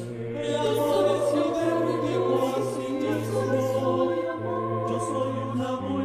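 Mixed choir of men's and women's voices singing slowly in long held chords that change every few seconds, over a sustained low bass note. It is a virtual choir, each singer recorded separately at home and mixed together.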